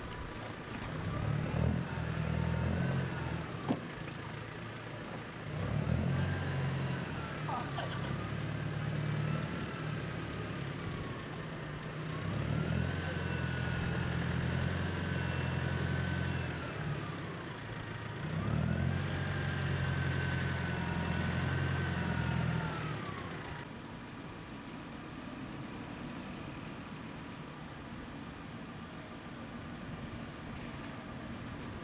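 A vehicle engine revving in four bursts of a few seconds each. Each burst carries a whine that rises, holds and then falls away.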